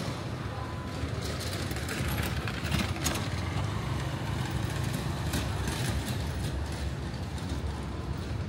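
A vehicle engine idling with a steady low rumble, over general city street noise, with a few short sharp clicks.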